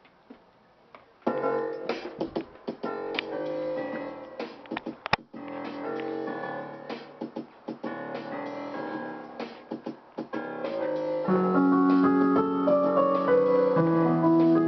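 A hip-hop beat being built: a programmed drum pattern with piano-like keyboard notes, played on a keyboard workstation. It starts after about a second of near silence. About eleven seconds in, a louder layer of sustained keyboard notes comes in as the main pattern is played.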